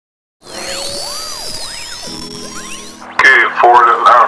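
Electronic sweeping tones, several pitches arcing up and down and crossing one another, start about half a second in, with a steady low hum joining about halfway. They stop shortly before the end, when speech begins.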